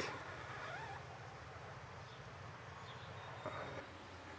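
Quiet background with a steady low hum and a few faint, brief bird chirps; a soft knock about three and a half seconds in.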